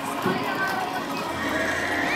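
Children's high-pitched voices calling and shouting during play, with a short thump about a quarter of a second in.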